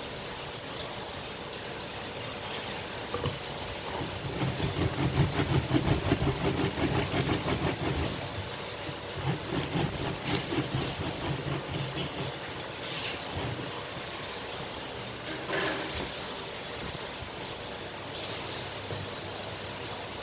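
Plastic hand citrus press being pressed and twisted down onto a lime half on its reamer: a rapid rhythmic grinding and squeezing, loudest in the first half and fading out later, over a steady background hiss.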